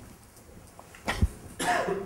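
A person coughing in a small room: a short sharp burst just after a second in, then a rougher, longer one near the end.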